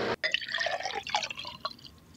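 Espresso trickling and dripping from an espresso machine into a cup, fading away near the end.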